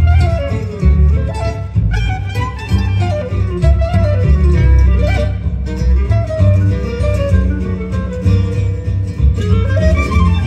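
Gypsy jazz quartet playing a musette-style jazz waltz live: clarinet carrying a winding melody over two acoustic guitars strumming the rhythm and a double bass.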